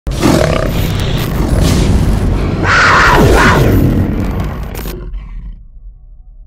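Logo intro sound effect: a loud, dense sound-effect hit with a roar at its peak about three seconds in. The upper sound stops abruptly near the end, leaving a low rumble that fades away.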